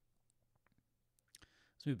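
Near-quiet room tone with a few faint, sharp clicks spread through it, then a breath and a man's voice beginning near the end.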